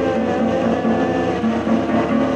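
A woman singing in long held notes while strumming an acoustic guitar.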